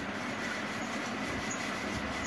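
Steady rushing background noise with no speech, even and unbroken throughout.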